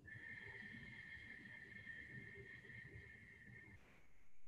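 A faint, steady high-pitched whistle held for nearly four seconds, cutting off suddenly near the end, over near silence.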